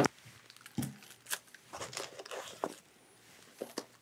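Cardboard product box being opened and its packaging handled: faint, scattered rustles and light clicks, with a sharper click at the very start.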